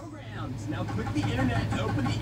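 Faint talking in the background over a steady low hum.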